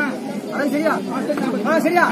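Crowd of spectators talking and calling out over one another: a steady babble of several men's voices.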